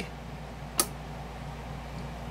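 A single sharp click about a second in as the Ansafone KH-85's rotary mode selector knob is turned to the listening (playback) setting, over a steady low hum.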